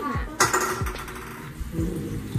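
A spatula clinks sharply against a stainless steel mixing bowl about half a second in, then scrapes around the bowl as batter is stirred for about a second.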